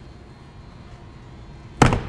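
Aircraft crew door swung closed, shutting with a single loud slam near the end.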